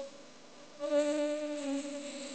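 A man's voice holding a low, steady hummed or sung note in worship. The note comes in nearly a second in and lasts about a second, after a brief pause.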